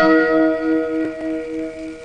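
Background film score: a bell-like note struck at the start, ringing on with a slow wobble and fading away.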